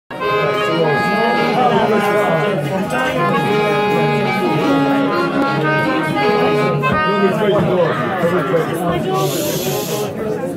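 Fiddle and accordion playing an Irish traditional tune together, the tune coming to an end about seven seconds in. Talk and pub chatter take over after it.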